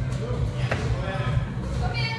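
A barbell loaded with bumper plates is dropped onto rubber gym flooring, one thud about two-thirds of a second in, over people talking.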